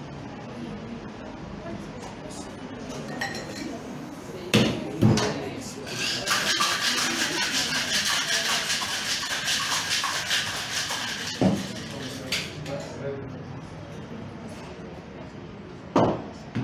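Ice rattling in a metal cocktail shaker shaken hard for about four seconds, a fast, even rattle. Two sharp knocks of the shaker tins come just before the shake, and another knock after it.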